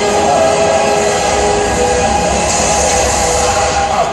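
A live band's loud amplified music, holding long, steady chords.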